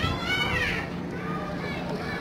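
A child's high-pitched call rising and then falling in pitch, about the first second, over other voices and a steady low hum from the train.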